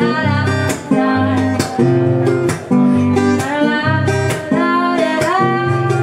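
Acoustic guitar strummed in a steady rhythm as part of a live song, with a melody line above it that bends up and down in pitch.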